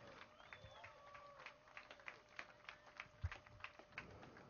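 Near silence: faint scattered clicks and a faint steady hum under the pause in the public-address sound.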